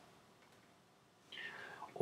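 Near silence, then a soft breath drawn in about half a second long, starting about two-thirds of the way through.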